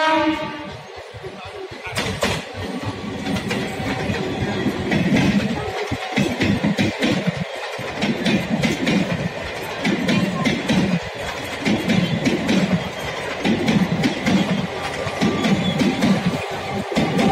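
Electric multiple unit (MEMU) passenger train passing close by: wheels clatter over rail joints in rapid, irregular clicks over a steady rumble. The last of its horn cuts off just at the start.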